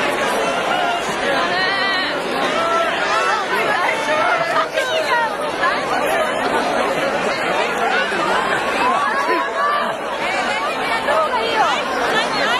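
Crowd chatter: many people talking at once, a steady babble of overlapping voices with no single speaker standing out.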